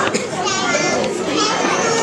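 Several overlapping voices, young children's among them, chattering without a break.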